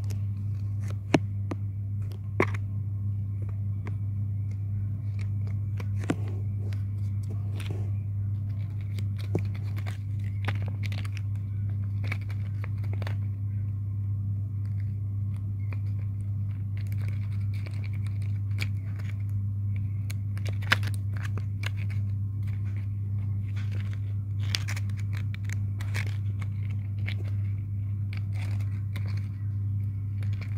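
A folded paper puppet being handled, giving scattered short paper crinkles and taps, over a steady low hum.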